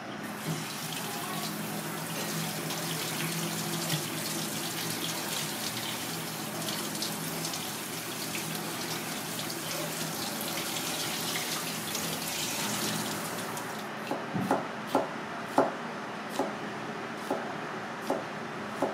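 Tap water running onto rice in a plastic colander as hands rinse it. About fourteen seconds in, the water stops and a kitchen knife chops yellow bell pepper on a plastic cutting board in a string of sharp knocks, a little under a second apart.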